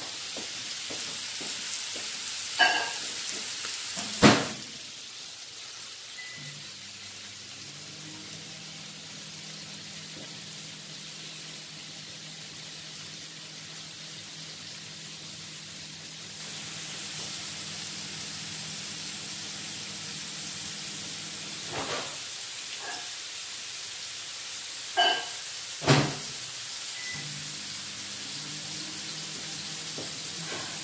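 Tiger prawns sizzling in hot oil in a non-stick frying pan, a steady hiss that gets louder about halfway through. A few sharp knocks come near the start and again late on, and a faint low hum runs under most of it.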